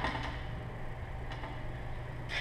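Steady low hum of indoor room noise, with one faint tap a little over a second in.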